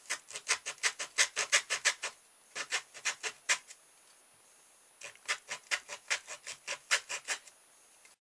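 Junior hacksaw sawing a slot into the end of a cardboard tube: quick back-and-forth rasping strokes, about six or seven a second, in three runs with short pauses between them.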